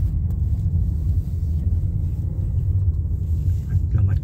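Steady low rumble of a moving car's engine and road noise heard from inside the cabin.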